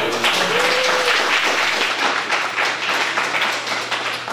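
Audience applauding, a steady patter of many hands clapping, with a short shout from the crowd about half a second in.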